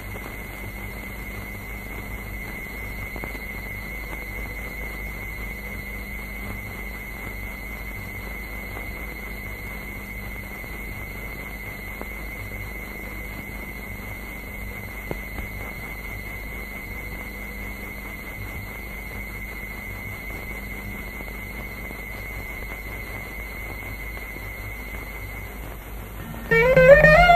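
Steady hiss and low hum with one constant high-pitched whine, unchanging throughout: the noise of an old analog film soundtrack during a stretch with no dialogue or music.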